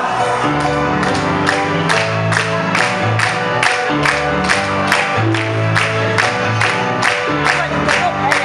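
Live rock band playing an instrumental passage: electric keyboard chords and electric bass notes over a steady, evenly spaced beat.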